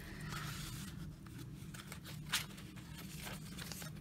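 Paper pages of a handmade journal rustling and being handled as a page is turned, with one sharper paper snap a little over two seconds in.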